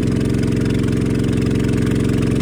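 An engine idling steadily, an even low hum that holds one pitch throughout.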